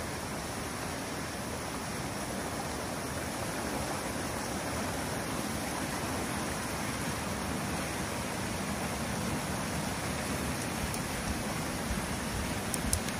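Water rushing through a breach in a beaver dam, a steady rush that grows slightly louder as the flow through the gap increases.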